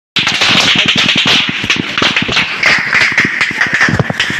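Gunfire in a firefight: rapid, irregular shots, several a second, from automatic rifles, over a steady hiss.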